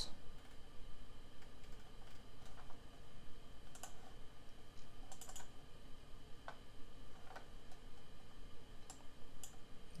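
A few light clicks from a laptop's keys or touchpad, spaced a second or more apart, over faint steady background noise.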